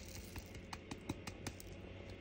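Quick, uneven light clicks and taps of diamond-painting work: small resin drills and the plastic drill pen or tray being handled, about four or five clicks a second.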